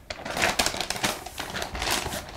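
Brown paper bag rustling and crinkling as it is handled and opened, a quick run of sharp crackles.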